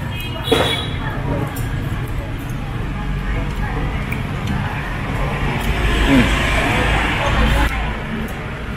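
Steady road-traffic rumble that swells as a vehicle passes close by about six to seven seconds in.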